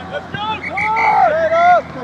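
Loud, high-pitched shouting: three or four drawn-out calls from one or more voices, each rising and then falling in pitch, without clear words.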